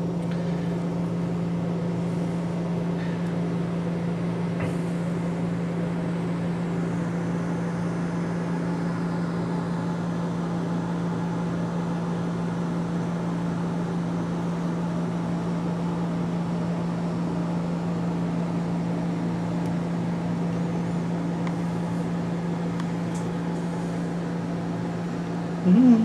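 A steady, unchanging low electrical hum with a faint hiss over it.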